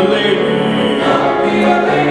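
Young men's choir singing sustained chords, the chord changing about a second in.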